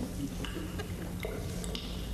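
A few light clicks and clinks, spaced out, over a steady low hum.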